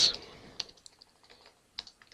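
Computer keyboard keys tapped a few times, faint and irregularly spaced, while text is being edited.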